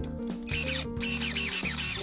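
Volpi KV500 battery-powered electronic pruning shears: the blade motor whirs in two short strokes, starting about half a second in, as the trigger is pulled to activate the shears and the blade moves. Background music plays throughout.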